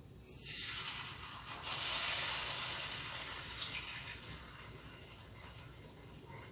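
Spoonfuls of grated-yuca dough for nuéganos going into hot oil in a frying pan and sizzling. The sizzle starts suddenly just after the start, is loudest about two seconds in, then slowly dies down.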